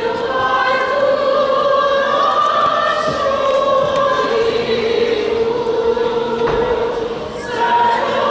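Mixed choir singing a slow passage in long held chords under a conductor; the sound dips briefly and a new phrase begins near the end.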